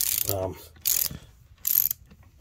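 Socket ratchet clicking in three short bursts while turning a bolt that is threaded into a stuck transmission bushing, working it to spin the bushing loose.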